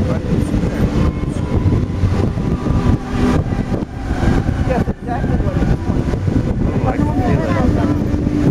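Voices of a crowd of onlookers talking, over a steady low rumble of street noise and wind on the microphone.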